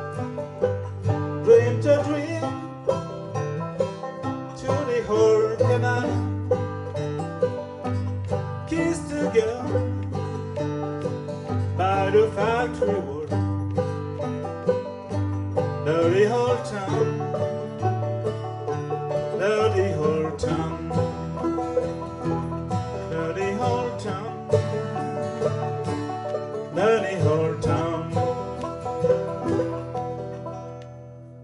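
Instrumental passage by an acoustic band: two banjos picking and an acoustic guitar playing, with a lead melody that bends in pitch over them. The tune comes to its end right at the close.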